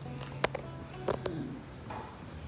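A metal spoon and table knife clicking against a ceramic plate: one sharp click about half a second in, then a few more a little after the one-second mark. A faint held tone sounds underneath.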